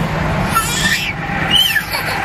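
A carsick toddler crying in her car seat, two short high wavering cries over the steady road rumble inside a moving minivan.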